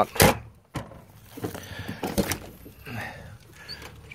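Metal storage compartment doors on a converted ambulance body being worked by hand: a loud clunk about a quarter second in, then a smaller click, and another sharp knock of a latch a little after two seconds as a compartment is opened.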